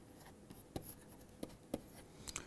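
Faint taps and scratches of a pen writing numbers on a tablet: a handful of short, separate clicks as the strokes go down.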